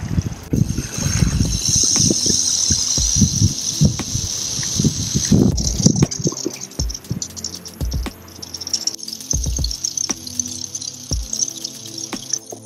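Eastern diamondback rattlesnake rattling its tail: a continuous high-pitched buzz, strongest in the first half and fainter later. It is the snake's defensive warning at being approached. Background music plays under it.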